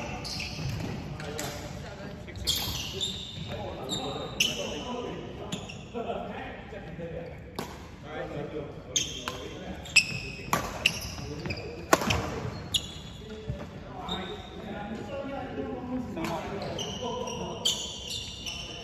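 Badminton doubles rally on a wooden court: sharp racket-on-shuttlecock hits at irregular intervals of one to two seconds, with short high squeaks of court shoes on the floor between them and a reverberant hall.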